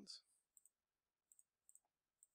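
Computer mouse button clicked three times, faint and spaced under a second apart. Each click is a quick double tick of press and release.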